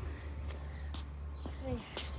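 A low, steady rumble with a few faint clicks, then a child's voice saying "three" near the end.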